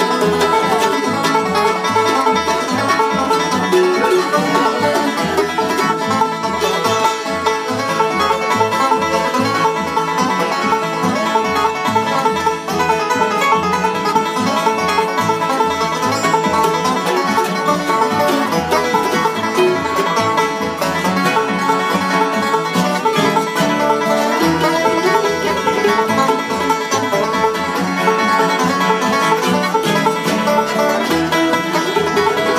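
Bluegrass played live on a resonator banjo, picked in quick rolls, over an upright double bass plucking a steady beat.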